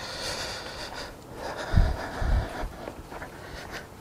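Close, soft breathy rustling noise for about a second, then two dull low thumps about two seconds in, half a second apart, like handling bumps near the microphone.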